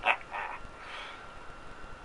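A man's two brief wordless vocal sounds through a smile in the first half second, an emotional catch in the voice, then quiet breath.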